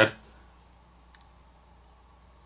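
A faint, sharp click about a second in, from fingers handling a smartphone's bare main board, over very quiet room tone.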